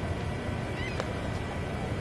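Steady low rushing roar of the Niagara Falls waterfall, with a few brief high chirping calls and a single sharp click about a second in.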